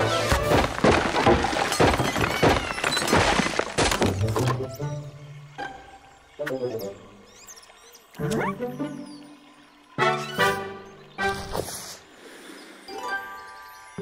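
Cartoon soundtrack: about four seconds of crashing, clattering sound effects, then short phrases of orchestral score that start and stop abruptly several times.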